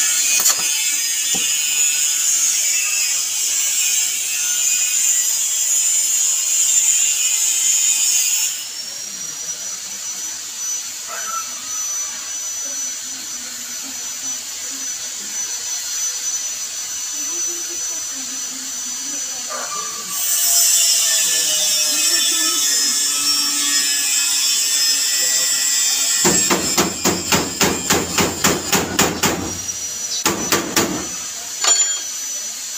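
Gas welding torch hissing against a van's sheet-metal body panel during rust repair. It cuts off about eight seconds in and starts again about twenty seconds in. Near the end there is a fast, even run of loud knocks, about five a second.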